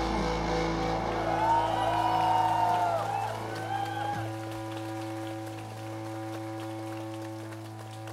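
The band's last electric guitar and bass notes ring out as the song ends, with a few sliding, wavering high tones in the first half. After about four seconds only a steady amplifier hum is left, with faint scattered clapping.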